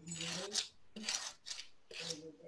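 Wire plumbing brush scraped back and forth over thin model-railroad stripwood lying on a sheet of glass, in a few short rasping strokes, roughing up the grain to give it a random weathered texture.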